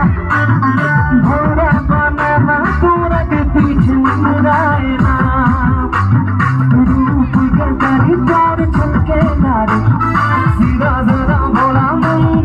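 A man singing into a microphone over loud amplified music with a steady beat, bass and guitar, played through a PA system.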